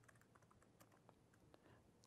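Faint, irregular keystrokes on a laptop keyboard: text being typed into an editor.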